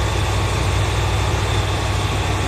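Steady low hum of a stationary train's running machinery, heard from inside the passenger car, with a faint high whine above it.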